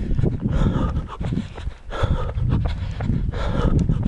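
Heavy panting breaths about every second and a half, over a constant rumble of wind and handling on a jostled microphone.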